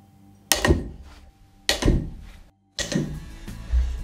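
Two loud sharp clacks about a second apart, each ringing briefly, as a giant neodymium magnet comes off plastic felling wedges and snaps onto a second one. Music comes in after a short gap, with a low thump near the end.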